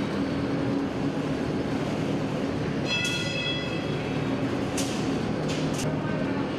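Steel rolling mill machinery running with a steady industrial rumble and hiss. A high metallic ringing starts about three seconds in and fades, and two short knocks come near the end.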